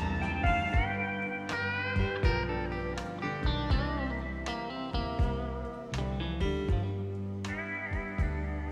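Country band playing a slow instrumental intro: steel guitar sliding between notes over a bass line and steady drum beats.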